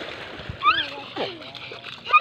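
Water splashing as a small child thrashes about in shallow water, with a short high-pitched child's call about half a second in.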